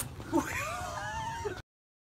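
High-pitched, wavering squeals from a startled woman, cut off suddenly about one and a half seconds in.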